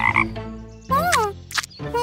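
Cartoon frog croaking: several short croaks with bending pitch.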